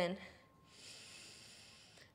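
A woman's slow, faint breath in, lasting about a second and a half, just after the spoken word "in".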